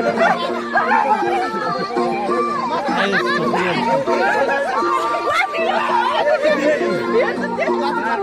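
A group of people shouting and laughing excitedly over background music that repeats steady held chords in short phrases.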